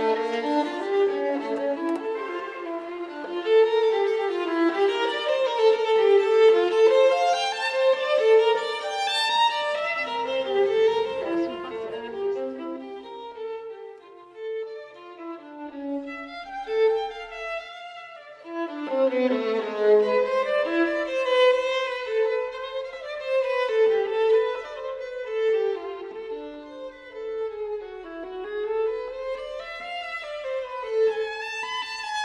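Instrumental background music, a violin carrying a flowing melody, growing quieter for a few seconds about halfway through before swelling again.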